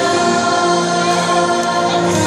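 Children's choir singing a song over backing music, holding long steady notes.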